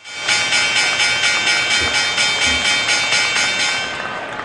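Electronic logo sting: an even pulse of about four strokes a second over steady high tones, starting suddenly.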